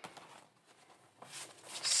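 Paper dollar bills being handled and counted: a faint tap at the start, then soft rustling of the notes that grows near the end.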